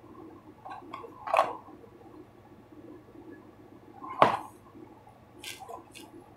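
Cardboard tea boxes handled on a wooden tabletop: soft rustling and scraping, with a sharp knock about four seconds in and a short hiss near the end.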